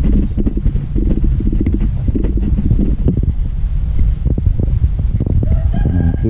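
Wind buffeting a handheld camera's microphone while walking on a dirt path: a loud, uneven low rumble with irregular knocks and rustles. A thin, steady high tone joins about two seconds in.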